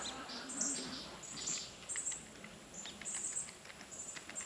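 Birds chirping: a string of short, high calls repeated roughly twice a second.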